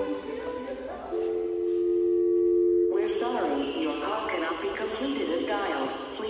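Recorded pop song ending on a long held note from about one to three seconds in. The sound then cuts abruptly to a duller-sounding recording of voices talking over music.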